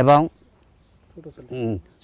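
A man speaking in two short phrases, one at the start and one just before the end, over a steady high-pitched cricket trill that runs on through the pause.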